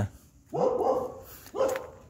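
A dog barking twice: a longer bark about half a second in and a shorter one near the end.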